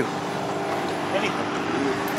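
Steady mechanical hum, with faint voices in the background.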